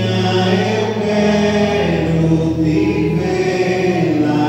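A group of voices singing a church hymn together in long, held notes.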